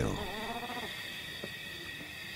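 Leopard growling briefly, fading out within the first second, over a steady high-pitched background drone.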